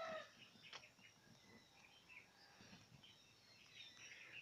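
Near silence: faint outdoor ambience with a few faint, short bird chirps.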